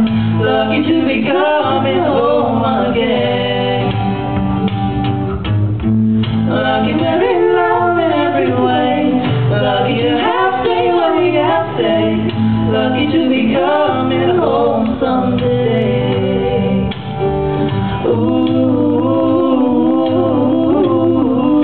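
A man and a woman singing a duet together, accompanied by a single acoustic guitar, played live and steady without a break.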